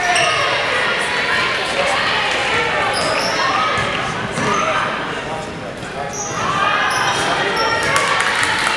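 A basketball bouncing on a hardwood gym floor during play, with sneakers squeaking in short high chirps. Voices ring out over it, echoing in the gym.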